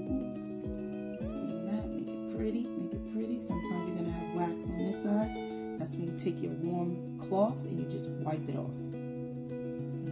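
Background music: guitar over held chords, with a low, even beat in the first half and a voice heard briefly in the second half.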